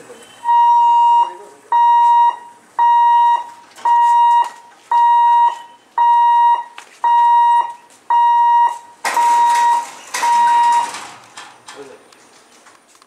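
Level crossing warning hooter beeping about once a second, ten loud, even-pitched beeps, while the boom barriers lower to close the road for an approaching train. A burst of rushing noise joins in under the last two beeps.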